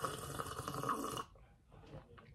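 A person sipping coffee from a mug: one slurping sip lasting about a second and a half, which stops about a second in.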